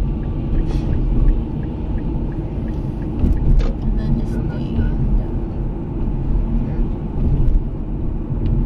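Car interior noise while driving: a steady low rumble of engine and tyres on the road, heard from inside the cabin.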